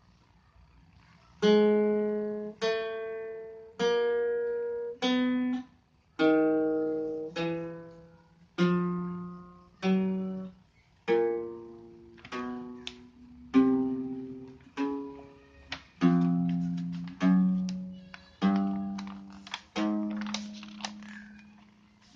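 Archtop acoustic guitar played one note at a time with a pick, about sixteen notes at roughly one a second, each ringing and dying away. It is a slow picking exercise: the first four frets fretted in turn on each string with alternating down- and upstrokes.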